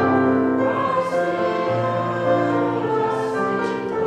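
Church choir singing in sustained chords.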